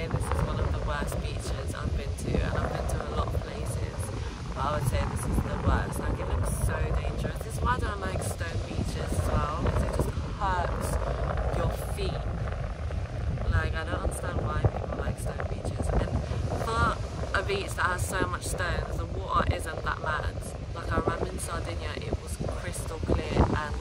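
Wind buffeting a phone's microphone, a heavy, continuous low rumble, with voices talking intermittently over it.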